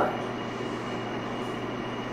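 Steady background room noise between speakers: an even hiss with a low hum and a faint thin high tone, level and unchanging.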